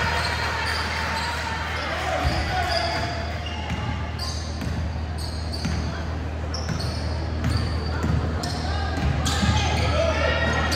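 Indoor basketball game sounds: a ball bouncing on the hardwood court, short high squeaks of sneakers and players' voices in the gym, over a steady low hum.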